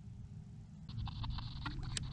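Low rumble of wind and water around a small boat on open sea, joined about a second in by a light hiss and a scatter of small clicks.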